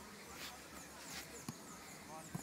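A single sharp thud about one and a half seconds in, a soccer ball struck by a foot on grass, over faint, high descending chirps.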